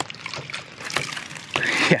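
Hydraulic ram pump running, its waste valve giving a few sharp clacks over the hiss and splash of water. Near the end water bursts out of the barely open delivery valve, a sign that back pressure is too low and the pump is losing pressure.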